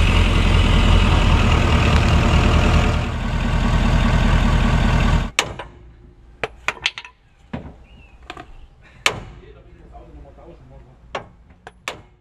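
A loud, steady motor or engine noise with a fast low pulse stops abruptly about five seconds in. It is followed by scattered sharp metallic clicks and knocks from tools being worked against the truck's front steering linkage.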